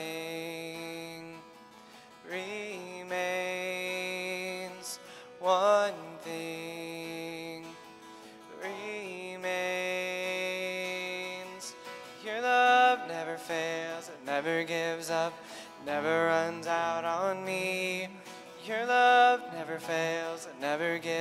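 A man singing a slow worship song while playing an acoustic guitar, with long held sung notes.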